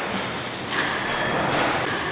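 Stationary steam pumping engine running, a hiss of steam and machinery clatter swelling and fading in a slow rhythm with the engine's strokes.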